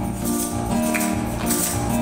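Instrumental introduction to an upbeat gospel song, with chords over a steady beat, just before the singing comes in.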